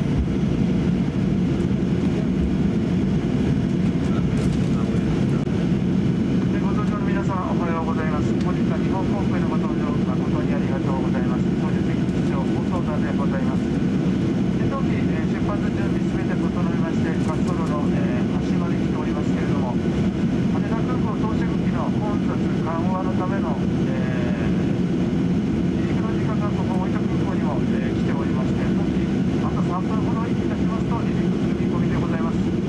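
Steady cabin drone of a Boeing 737-800 taxiing, the hum of its CFM56 turbofan engines running evenly at low power.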